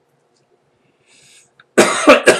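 A man coughing into his hand. The cough starts loud and sudden near the end, after a mostly quiet stretch.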